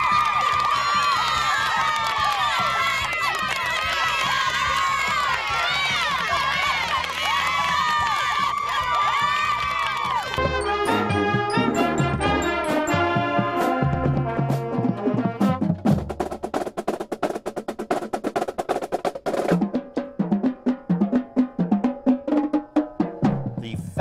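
A group of cheerleaders screaming and cheering together for about ten seconds. Then a high school marching band starts playing: clarinets and brass over sharp snare and bass drum strokes.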